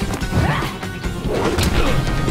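Animated action sound effects: several sharp hits and crashes, the loudest about one and a half seconds in, over a dramatic music score.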